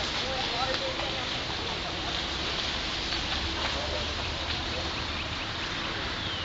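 Faint background voices murmuring over a steady hiss of ambient noise.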